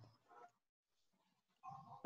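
Near silence in gated video-call audio, with a faint short pitched sound near the end.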